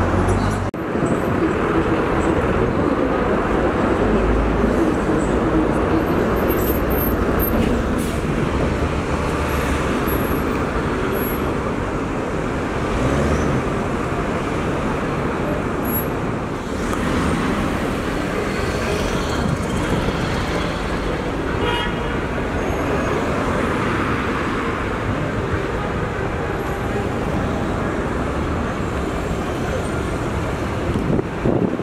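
Steady city traffic noise: many cars running and passing in slow, congested street traffic.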